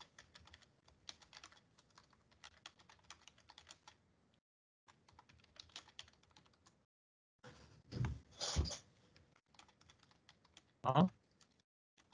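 Computer keyboard typing, heard through a video-call microphone: quick runs of light key clicks with short pauses between them. Two louder, fuller sounds break in, one about eight seconds in and one about eleven seconds in.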